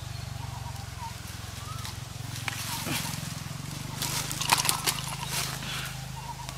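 Rustling and crackling of dry leaves and twigs being handled, loudest in a burst of sharp crackles about four to five seconds in. Under it run a steady low hum and a few faint bird chirps.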